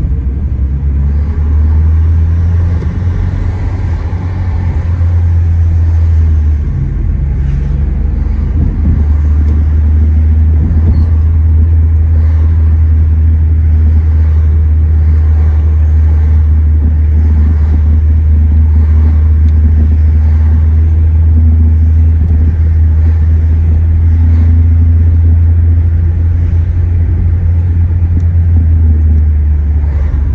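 Inside a moving car's cabin: a loud, steady low rumble of engine and tyre noise while cruising along a highway.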